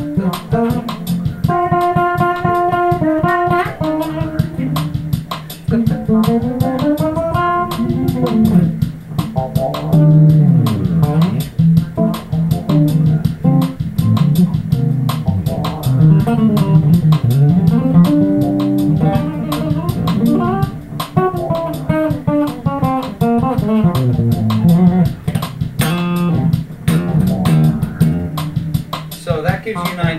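Ken Smith Burner electric bass, made in Japan, played fingerstyle on the rear pickup with the bass EQ boosted, giving what is called a creamy, nice fusion tone. A continuous melodic line of plucked notes, with some held high notes and sliding pitches.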